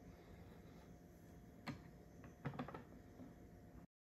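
Low room tone with a few faint clicks and knocks of hard plastic graded-card slabs being handled and set down on a wooden table. There is one click about halfway through and a short cluster just after.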